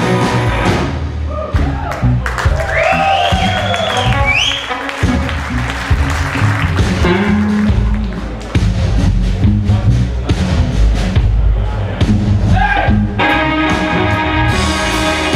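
Live blues band playing an instrumental passage on electric guitars, bass guitar and drum kit. A lead line with bent, sliding notes runs through the first few seconds, and full sustained chords come back near the end.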